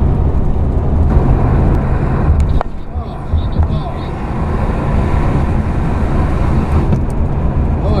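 Steady road and engine noise heard inside a vehicle cruising at highway speed, mostly a low rumble; it dips briefly about two and a half seconds in.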